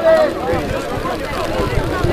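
Distant shouting of voices across a rugby pitch, with one loud high call right at the start, over a low rumble.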